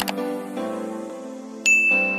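A click, then about a second and a half later a bright bell-like notification ding that rings on as one high tone, over steady background music: sound effects for tapping Subscribe and the bell icon.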